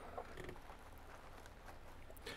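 Faint steady background noise with a low hum underneath and one small tick about a quarter second in.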